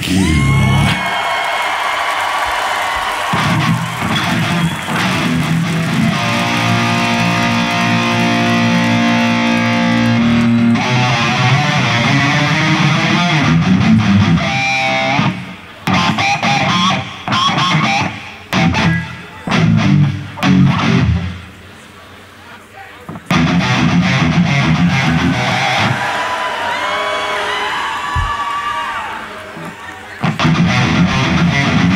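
Live rock band with electric guitars and drums playing through a long held chord, then a string of short loud stabs with gaps between them, typical of a rock song's drawn-out ending. After that, a steady wash of crowd noise.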